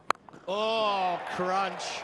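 A single sharp crack, a cricket bat striking the ball, about a tenth of a second in, followed by a man speaking.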